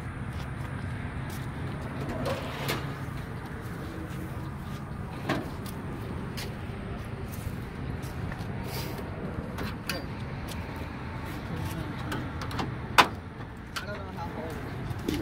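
A sharp metal click near the end as the rear engine lid of a 1957 Volkswagen Type 2 van is unlatched and swung open, with scattered small knocks before it over a steady low hum.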